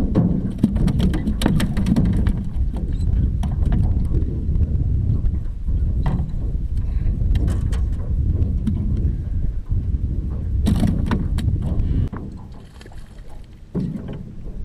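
Wind rumbling on the microphone of a camera mounted in a small aluminum boat, with scattered sharp clicks and knocks as a fish is handled. The rumble drops off sharply about two seconds before the end.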